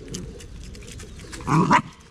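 A dog gives one short bark about one and a half seconds in, over faint clicking and rustling.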